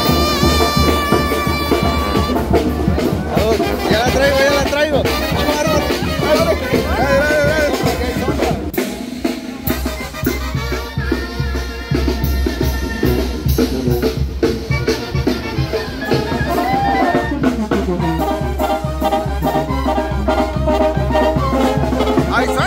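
Oaxacan brass band playing a lively march with sousaphone, brass horns and snare and bass drums, opening on a long held note.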